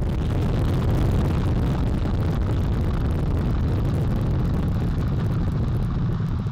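Space Launch System rocket climbing off the pad just after liftoff, its four RS-25 core-stage engines and two solid rocket boosters at full thrust: a loud, steady, deep rumble with a fine crackle on top.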